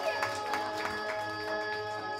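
Music with held, steady chord tones, and a few scattered claps early on.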